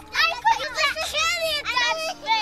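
Children's high-pitched voices talking, several at once.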